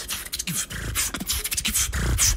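Beatboxing through a microphone: a quick run of sharp mouth clicks and crisp hissing hits, with little voiced tone, quieter than the passages around it.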